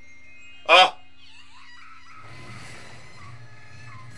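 Anime film trailer audio heard through playback: a short, loud pitched sound just under a second in, then music with voices from about two seconds in.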